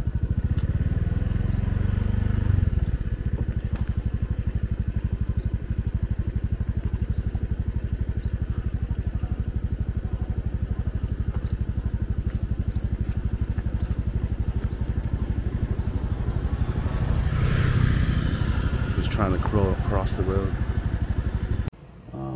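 A small motorcycle engine idling with a steady, even putter. Near the end it swells louder for a few seconds, then cuts off suddenly.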